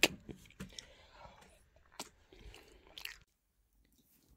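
Close-up chewing of battered fish and chips, a string of soft crunches and clicks, which cuts off abruptly a little after three seconds in.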